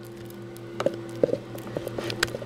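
A utensil stirring thick cashew and coconut-oil paste by hand in a Vitamix blender jar, giving a few soft knocks and squelches against the jar in the second half, over a steady low hum.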